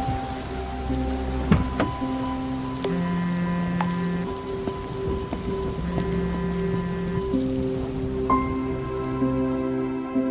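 Steady rain falling on a road surface, under slow music of long held notes.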